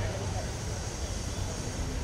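Steady low hum of an idling vehicle engine, with indistinct voices of people nearby.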